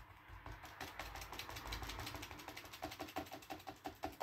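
A round-ended brush dabbing thick acrylic paint onto paper in a rapid run of soft taps, about five or six a second, growing more distinct over the last second or so.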